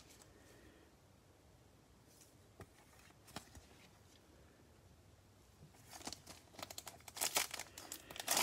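Foil wrapper of a Panini Select basketball card pack crinkling in gloved hands and being torn open. A few faint taps come first; the crinkling starts about six seconds in and grows louder toward the end.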